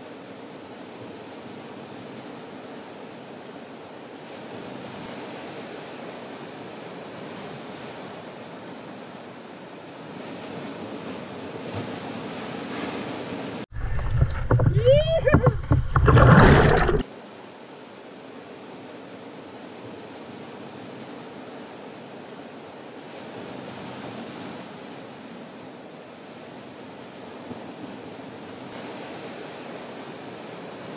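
Steady wash of ocean surf. About halfway through, a few seconds of loud water rushing and splashing break in, with bubbling gurgles, as a waterproof action camera rides at the waterline through the spray of a breaking wave.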